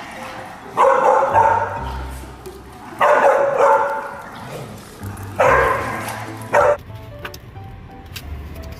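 Puppies barking during a tug-of-war over a leash: three loud barking bursts about two seconds apart, then a short one, over background music.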